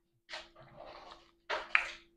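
Faint breathing and mouth sounds of a person tasting a drink just sipped: two short breathy puffs about a second apart.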